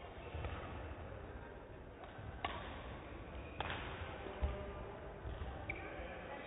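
Badminton rally: a racket strikes the shuttlecock with two sharp cracks about a second apart, midway through, amid dull thuds of players' footfalls on the court and a brief squeak near the end.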